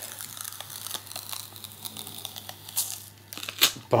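Clear plastic security seal sticker being peeled off a cardboard box: the film crinkles and the adhesive crackles as it pulls away, with a few sharper, louder cracks near the end.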